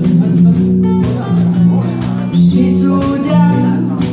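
Live band playing an instrumental passage between sung lines of a French chanson: strummed acoustic guitar over steady low bass notes.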